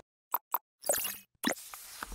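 Sound effects of an animated TV channel logo: two short plops about a fifth of a second apart, then swishing whooshes about a second in and again near the end.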